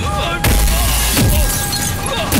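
A loud crash of shattering glass with a heavy low thud about half a second in, a fight-scene impact effect, over dramatic background music.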